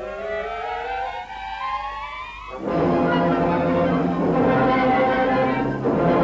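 Orchestral film score: a rising string passage climbs for about two and a half seconds, then the full orchestra comes in suddenly and loudly, holding a dense chord.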